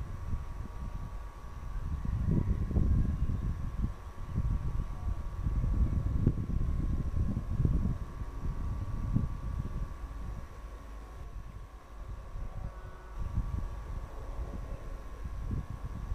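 Gusty wind buffeting the microphone in uneven surges over the distant rumble of an approaching electric-locomotive-hauled passenger train. A steady thin high tone runs underneath.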